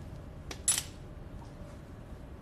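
Metal surgical instruments clinking: a faint click, then one short, bright metallic clink under a second in.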